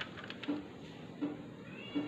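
Cellophane wrapper crinkling and crackling in short bursts as it is pulled off a plastic cassette case. Behind it, a faint short low beep repeats about every three quarters of a second, and a brief rising high-pitched call comes near the end.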